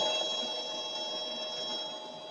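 Rotary screw air compressor with a permanent-magnet motor on a variable-frequency drive, turned down to low speed (about 1500 rpm, 1.6 kW) and giving a steady hum with several constant whining tones. The level eases off slightly early on, then holds.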